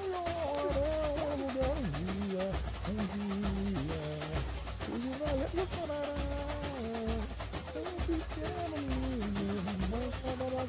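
Samba-enredo music: a melody of held, gliding notes over a steady samba percussion beat, with deep bass-drum pulses about once a second and a dense rattle of small percussion.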